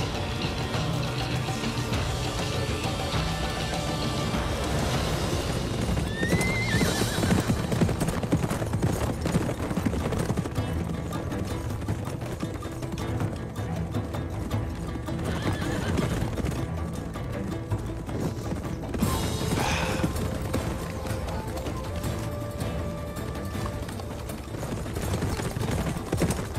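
A troop of horses galloping off, with hoofbeats and whinnying, under a dramatic orchestral score.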